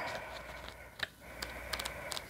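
Pages of a small paperback guidebook being leafed through by hand: soft paper rustling with light ticks, one about a second in and a quick cluster near the end.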